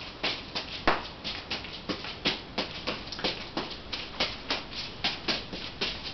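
Three juggling balls thrown and caught in a steady rhythm, the soft slaps of catches in the hands coming about three a second, as a reverse cascade is juggled with the arms crossed.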